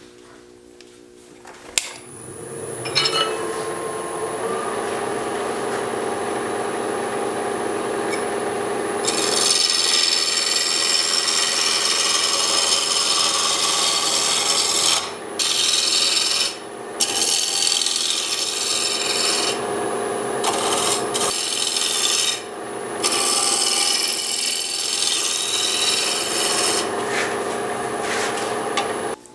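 A wood lathe is switched on about two seconds in and its motor whines as it comes up to speed. From about nine seconds a spindle roughing gouge cuts the spinning apple-wood blank down to round: a loud, steady scraping of tool on wood, broken by several short pauses as the tool is lifted off.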